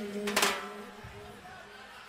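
A singer's voice ends a sung line and fades out, with a short vocal syllable about half a second in. Then comes a brief quiet lull in the music.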